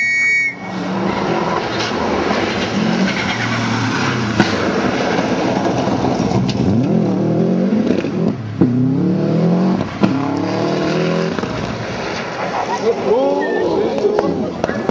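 Rally car engine on a gravel forest stage, revving hard and climbing in pitch through several gear changes, with a sharp crack about four seconds in.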